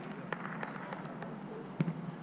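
Five-a-side football on artificial turf: scattered light taps of players' footsteps and ball touches, with one sharper thud of the ball being kicked near the end.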